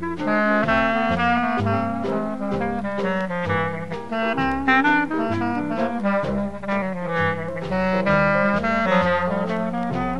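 Traditional New Orleans jazz band playing an instrumental passage, with horns carrying the melody over a steady beat.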